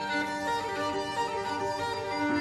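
Solo violin playing a melody of held notes over orchestral accompaniment.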